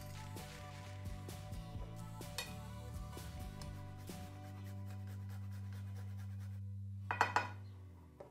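Background music, with a few light clinks and rasping strokes over roughly the first half from garlic cloves being grated on a metal rasp grater.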